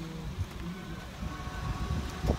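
Low, uneven rumble of a vehicle on the road close by, with faint steady engine tones.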